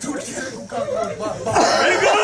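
A man coughing and making voice sounds, with a louder burst of voices and noise starting suddenly about one and a half seconds in.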